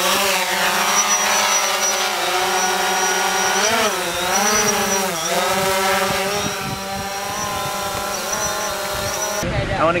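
Quadcopter drone's propellers spinning up as it lifts off, then a steady hum while it hovers and climbs. The pitch dips and rises a couple of times midway as it manoeuvres, and the sound cuts off suddenly near the end.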